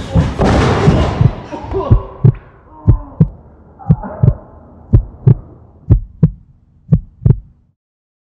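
A loud, dense burst dies away over the first two seconds. It gives way to a heartbeat sound effect: about six deep double thumps, one pair a second, each pair's second beat close behind the first. It cuts out shortly before the end.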